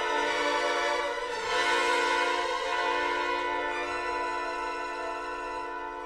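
Symphony orchestra with prominent strings holding a sustained chord. It swells about a second and a half in, then slowly fades.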